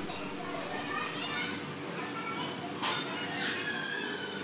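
A crowd of children chattering and calling out, many voices overlapping with no single speaker standing out, and a brief sharp sound about three seconds in.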